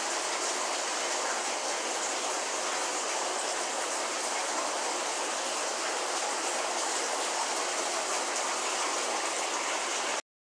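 Steady bubbling and splashing of water at the surface of a fish tank, from the aeration churning the water.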